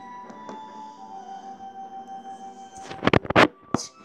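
Quiet background music of long-held steady tones from a TV episode's soundtrack. About three seconds in, a short burst of loud knocks and rubbing, then one more near the end: hands handling the action figure close to the microphone.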